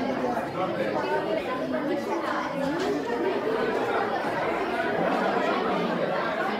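Many voices chattering at once in a large room: schoolchildren talking over one another, with no single voice standing out.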